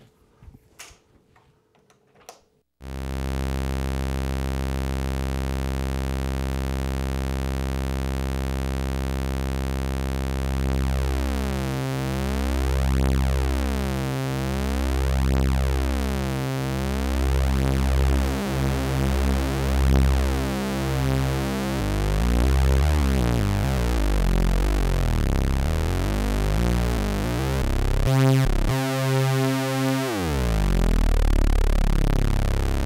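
Three Moog System 55 oscillators sounding sawtooth waves together: a low, buzzing drone that comes in suddenly about three seconds in. From about ten seconds in the oscillators drift against each other as they are tuned, giving slow, swirling beating, and the tones shift again near the end.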